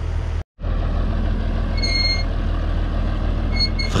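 Farm tractor's diesel engine running steadily at low speed while it pulls a plastic-mulch-laying machine. The sound drops out for an instant near the start, and a brief high-pitched squeak or beep comes about two seconds in.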